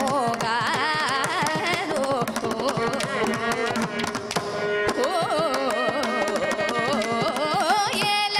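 Carnatic vocal music: a young girl's voice sings a line with wavering, ornamented pitch, accompanied by quick, dense strokes on a ghatam, a South Indian clay-pot drum.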